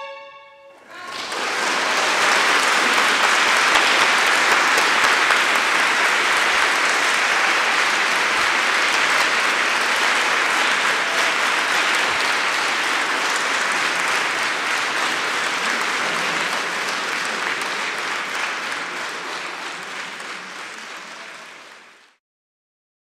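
Audience applauding a solo violin performance. The last violin note dies away at the start, and the applause rises about a second in. It holds steady, fades over the last few seconds and cuts off at the end.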